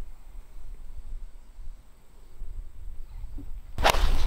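A 2-iron striking a golf ball off the tee: one sharp crack near the end, after a few seconds of faint low background rumble.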